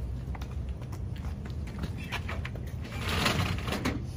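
Light clatter and rustling of equipment being handled in a fire engine's side compartment, a few short clicks, with a fuller scrape and rustle about three seconds in. A low steady rumble runs underneath.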